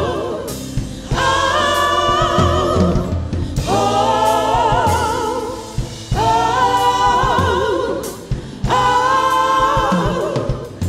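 Live gospel choir singing in four long held phrases with wavering, vibrato-laden notes and brief breaks between them, over a steady instrumental backing.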